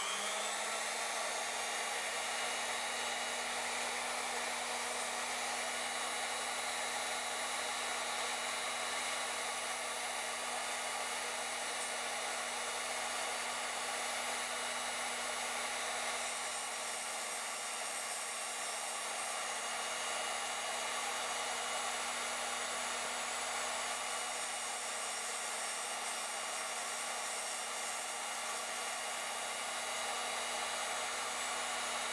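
DoAll tool post grinder running at full speed with a steady motor whine and air rush from its coarse stone, while the stone is being dressed with a diamond-tip dresser.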